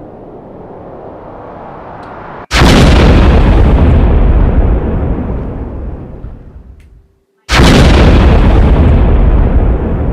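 Two loud boom hits about five seconds apart, each starting suddenly, heavy in the bass, and dying away over a few seconds: horror-film impact sound effects. A faint noise builds slowly before the first hit.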